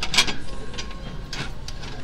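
A painted metal flower decoration being handled on a shelf, knocking and scraping against metal, with a sharp knock just after the start and another about a second and a half in.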